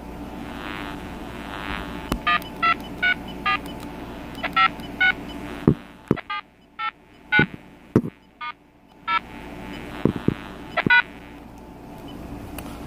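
Telephone keypad tones from a BellSouth MH9934BK cordless handset: short tone beeps in quick runs as the buttons are pressed repeatedly, with a few soft key clicks and a steady background tone at the start and end. The buttons may be giving a little trouble.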